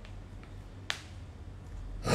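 A few small, sharp clicks over quiet room tone: faint ones near the start and about half a second in, and a sharper one just before one second.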